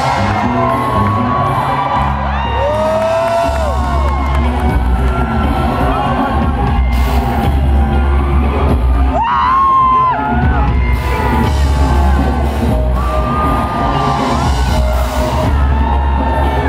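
Loud live funk-pop concert music: a band with deep, pulsing bass and a singer's voice gliding over it, with crowd whoops.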